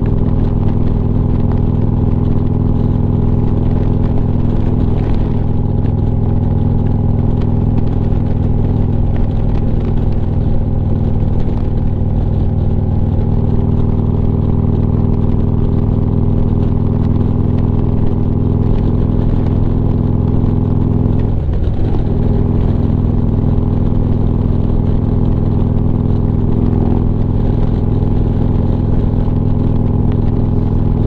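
Harley-Davidson Street Glide's V-twin engine running steadily at highway cruising speed. The engine note dips briefly and comes back about two-thirds of the way in.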